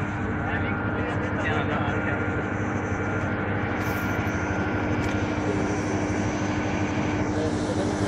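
Powerhouse generator engines running steadily: a constant mechanical drone with a steady whine over it.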